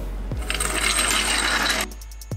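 Electronic background music with a regular drum beat. About half a second in, a mechanical hiss with rattling comes in over it and lasts about a second and a half before cutting off.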